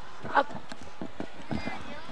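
Several irregular thuds of basketballs bouncing on a gymnasium floor, over steady background chatter of a crowded gym with a brief child's voice.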